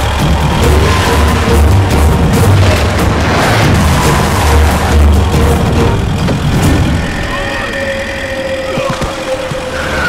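Dramatic action-film background score with heavy, pounding low drum hits. It eases off about seven seconds in, leaving a long held note.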